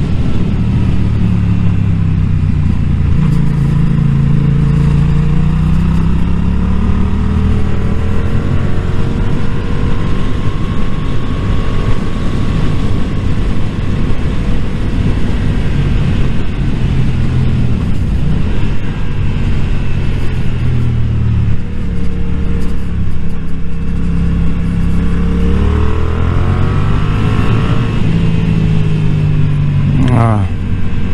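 A Yamaha naked motorcycle's engine running on the move. Its pitch falls and rises several times as the throttle is rolled off and on, climbing again near the end. Strong wind rush on the microphone runs underneath.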